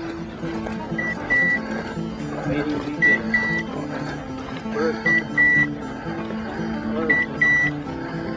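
A bird dog's beeper collar sounding its point signal, a short beep followed by a longer beep of the same high pitch, repeating about every two seconds: the sign that the dog is standing on point. Soft background music with slowly changing notes runs underneath.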